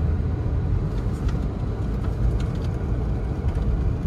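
In-cabin sound of a C8 Corvette driving on a slushy, snow-covered road: a steady low drone from its V8 engine under tyre and road noise.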